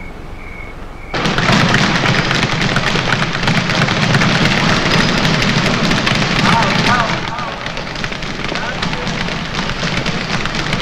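Boxing-gym din: a dense, continuous clatter of punches and bag hits with background voices, starting suddenly about a second in. Before it, a faint high chirp repeats about twice a second.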